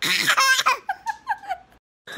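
Baby laughing: one loud high laugh, then about six short laughs in quick succession, cut off suddenly near the end.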